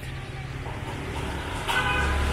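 A motor vehicle's engine running on the street, steady at first and growing louder near the end as it approaches.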